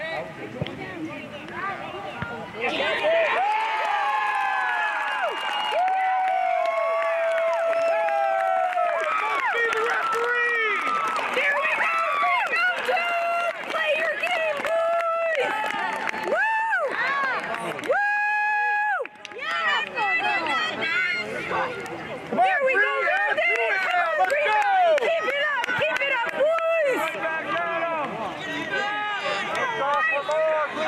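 Spectators and players cheering and shouting for a goal. The noise jumps up suddenly about three seconds in and goes on as many overlapping voices, with a few long held yells.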